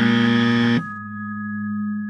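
Electronic "wrong" buzzer sound effect: a harsh, buzzy tone lasting about a second that cuts off suddenly. It sounds over sustained synth music tones, which carry on after it.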